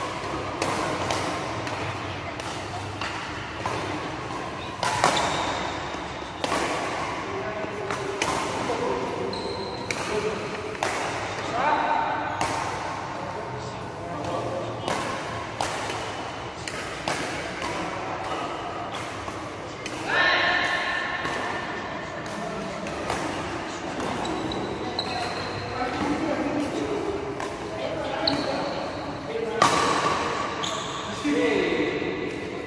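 Badminton rackets striking shuttlecocks in a large, echoing hall: a steady run of sharp hits, often less than a second apart, from rallies on this and the neighbouring courts.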